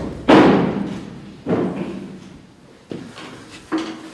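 Four sudden loud bangs, the first the loudest, each trailing off in a long echo off bare concrete walls.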